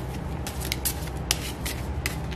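Tarot cards being handled and shuffled by hand: a series of short, crisp papery flicks and snaps over a steady low hum.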